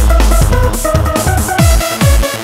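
Hands up electronic dance track: a synth melody plays over a held deep bass while the four-on-the-floor kick drum drops out, and the kicks come back right at the end.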